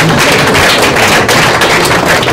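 An audience applauding: many hands clapping in a dense, steady patter.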